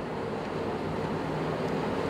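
Steady room noise of a large hall: a continuous low hum and hiss with a faint steady tone, gently rising in level.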